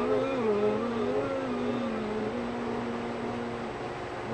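A low, drawn-out voice with slowly wavering pitch, held in long stretches and breaking off shortly before the end.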